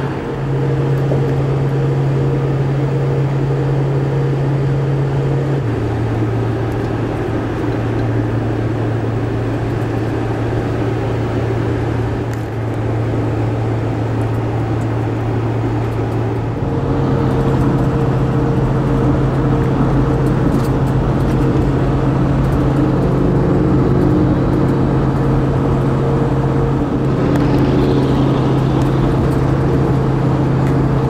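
Steady engine drone and road noise heard from inside a moving vehicle on the highway. The low hum drops in pitch about six seconds in and climbs back up about sixteen seconds in.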